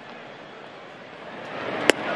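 Ballpark crowd murmuring, swelling as the pitch comes in. Near the end there is a single sharp pop as a 97 mph fastball smacks into the catcher's mitt.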